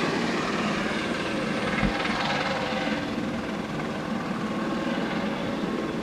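Helicopter coming in low to land, its rotor and engine running steadily.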